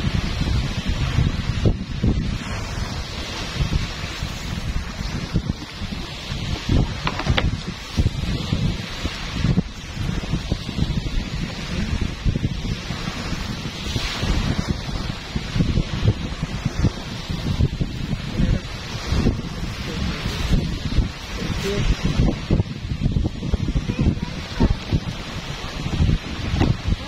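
Wind buffeting the microphone in uneven gusts, over small waves washing onto a sandy shore.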